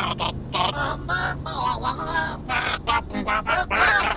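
Two reptilian creature characters chattering in high, quick, choppy syllables that form no recognisable words.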